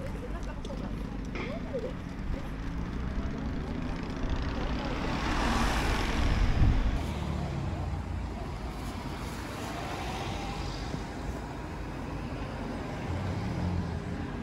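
Street ambience with a vehicle passing by on the road, its noise building about four seconds in, peaking a couple of seconds later and then fading, with faint voices of passers-by.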